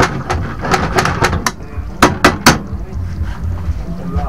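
Metal spoon stirring and knocking against a nonstick frying pan full of swordfish, with a run of light clicks and then three sharp taps in quick succession about two seconds in, as the spoon is knocked on the pan.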